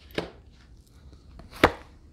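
Oracle cards being handled and laid down on a table: a light tap just after the start, then a louder sharp tap about a second and a half in.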